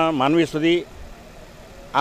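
Speech: a man's voice finishing a phrase in the first second, then a pause of about a second with only faint background hum.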